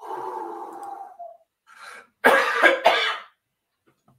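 A person coughing: a drawn-out vocal sound at first, then a quick run of loud, hard coughs about two seconds in.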